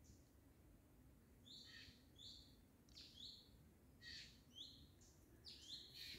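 Faint bird calls: a string of short, high notes, each dropping in pitch, repeated roughly twice a second from about a second and a half in, over a quiet forest background.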